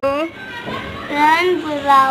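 A young child's voice speaking, high-pitched and drawn out, starting abruptly.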